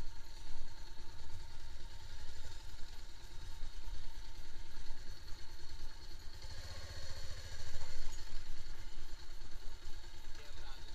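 Sport motorcycle engine running at low speed as the bike rolls slowly over sand, growing louder for a moment about seven to eight seconds in.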